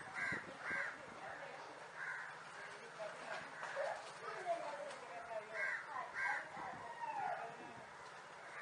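Harsh bird calls repeated several times, some in quick pairs, over faint background voices.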